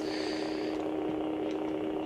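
A steady low electrical hum over faint room noise, with a faint high whine in the first second.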